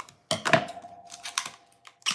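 A few light plastic clicks and taps as a small spray bottle of counter cleaner is handled, over a faint steady tone.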